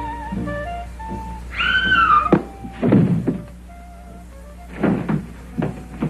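Film soundtrack: dance-band music fades out, and about a second and a half in there is a short high wailing tone that rises and falls. Then come several dull thuds in two clusters, around three seconds in and near five seconds in.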